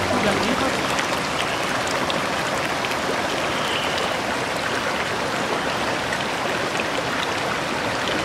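Steady rush of water pouring over the inflow weirs and flowing along concrete trout-farm raceways.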